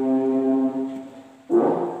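Melodic Qur'an recitation (tilawah) by a man's voice through a microphone: one long held note fades out about a second in, and about half a second later the next phrase starts with a wavering melody.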